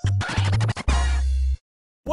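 Intro music sting with turntable-style scratching over heavy bass, in choppy stop-start bursts that cut off suddenly about one and a half seconds in, followed by silence.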